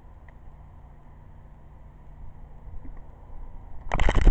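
Quiet, steady low background rumble with a faint click or two, growing slightly louder near the end.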